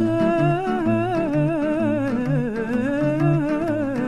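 Italian love song: a voice carries a long, wavering melody with vibrato and no clear words, over a plucked bass that alternates between two low notes.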